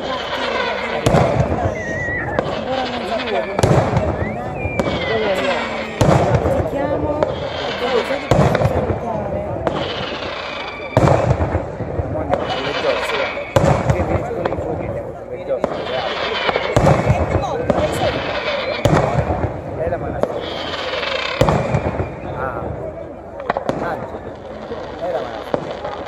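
Daytime fireworks display: aerial shells and firecrackers bursting in a steady run of sharp bangs, one every second or two, with voices talking close by.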